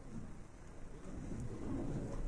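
A low, steady rumbling noise with no clear voice or distinct knocks.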